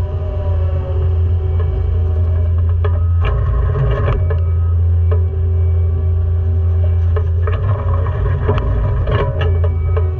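Caterpillar skid steer's diesel engine running with a steady low drone, with a few sharp clanks about three to four seconds in and again near the end. Background music with a plucked-string melody plays over it.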